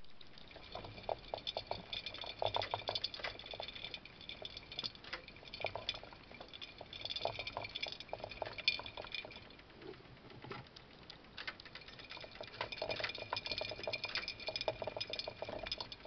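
Rotastak "Rainbow Runner" enclosed plastic exercise wheel spinning with two mice running in it together: a continuous rapid, irregular pattering and rattling of small feet on the plastic, easing a little near the middle.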